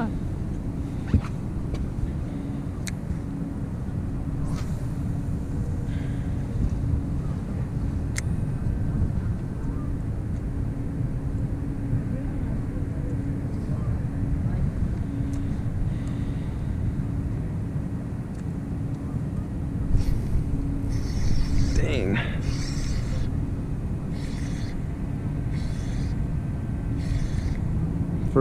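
A boat's outboard motor running steadily at low speed: a low rumble with a constant hum.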